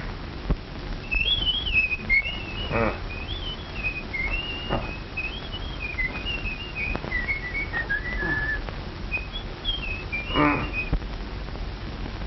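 A person whistling a wandering tune for about ten seconds, starting about a second in and stopping shortly before the end, with a few short knocks underneath.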